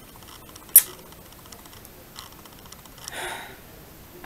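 Clicking at a computer: one sharp click a little under a second in, then a few faint clicks. A short breathy sound comes near the end.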